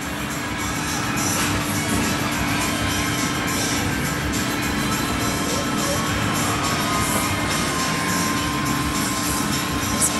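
Background music over the steady din of an arcade game room, with a constant low hum underneath.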